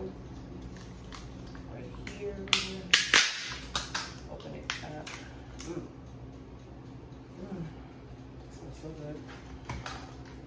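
Small plastic tub of avocado spread being opened: a quick cluster of sharp snaps and crackles about two and a half to three seconds in as the lid comes off, then scattered small clicks of handling the container.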